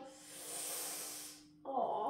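A soft, even hiss lasting about a second, then a woman's voice begins near the end.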